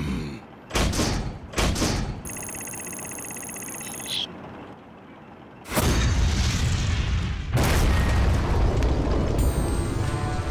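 Cartoon sound effects of a robot's arm cannon firing: two sharp hits in the first two seconds, a high electronic whine for about two seconds, then from about six seconds a loud sustained blast and rumble that surges again near eight seconds as the shot goes off.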